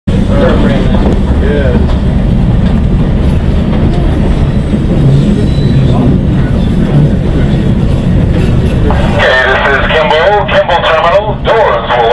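Steady rumble of a CTA 2200-series 'L' train rolling slowly over curved track and switches, heard from inside the car. About nine seconds in, the train's recorded station announcement starts over the rumble.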